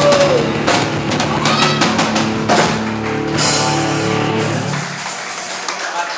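Rock music with a drum kit and electric guitar. A held note slides down at the start, and the low end drops out about five seconds in, leaving the music thinner.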